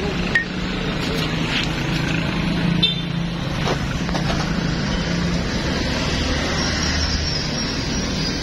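Steady motor vehicle engine noise with a low hum that fades about five and a half seconds in, with a few light clicks of a hand tool against the metal fork parts.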